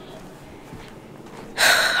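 Low room tone, then, about a second and a half in, a woman's short, sharp intake of breath.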